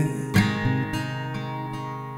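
Song accompaniment between vocal lines: a guitar chord strummed about a third of a second in, then left ringing and slowly fading.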